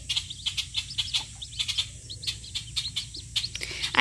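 Two-day-old Welsh Harlequin ducklings and a White Chinese gosling peeping: many short, high peeps in quick succession.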